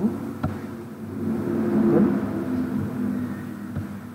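A motor vehicle's engine running, growing louder toward the middle and fading again, with two faint clicks, one near the start and one near the end.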